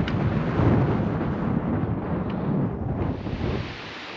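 Wind buffeting the camera's microphone: a loud, uneven, low rumble of wind noise that eases off just before the end.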